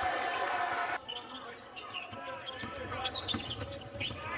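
Arena crowd noise that cuts off suddenly about a second in, then a basketball being dribbled on a hardwood court, with short bounce ticks amid the arena background.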